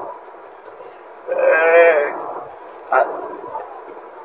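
Steady road and cabin noise of a bus moving at speed. About a second in, a single drawn-out vocal call or cry rises over it, and a short knock comes near the end.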